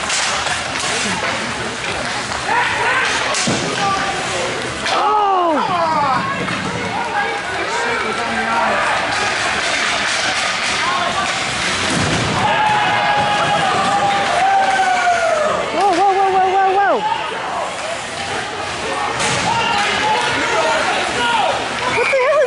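Spectators shouting and calling at an ice hockey game, including a long drawn-out call in the middle, over the thuds and clatter of sticks, puck and players against the rink boards.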